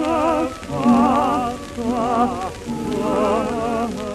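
Old gramophone-era recording of a Neapolitan song: a melody with wide, fast vibrato in short phrases, breaking off about half a second in and again near the middle, over a low sustained accompaniment. Steady crackle of record surface noise runs underneath.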